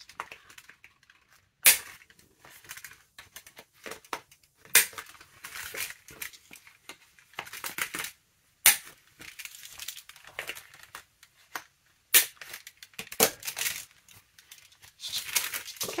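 Handheld corner rounder punch cutting the corners of a paper envelope: four sharp clacks a few seconds apart, with paper rustling as the envelope is turned between cuts.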